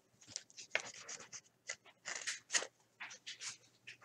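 A trading card being slid into a clear plastic sleeve and holder: a quick run of short, irregular plastic scrapes and rustles.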